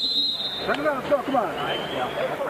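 A high steady signal tone cuts off just after the start, followed by indistinct men's voices talking.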